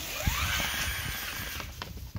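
Electric skateboard motors whining up in pitch as the board pulls away under power, with its knobby pneumatic all-terrain tyres rumbling and bumping over dry grass.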